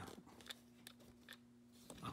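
Near silence: a few faint clicks and crinkles of handling, about three in all, over a faint steady hum.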